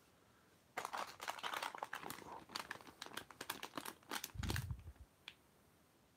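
Shiny plastic blind-bag packaging crinkling as it is picked up and handled, a run of crackles from about a second in until near the end. A low thump comes near the end.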